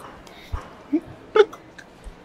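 Two short wordless vocal sounds from a man, a brief low one about a second in and a louder one half a second later, preceded by a soft low thump.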